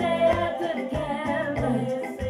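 A woman singing a gospel song into a handheld microphone, amplified through a PA, over an instrumental backing with a steady bass line and regular percussion ticks.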